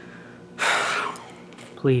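A man's loud, sharp gasp, about half a second long, a little over half a second in. He starts speaking near the end.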